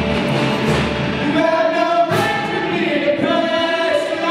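Student rock band playing live, electric guitars and bass with singing. About a second in the bass end drops away, leaving voices holding long sung notes over the guitars.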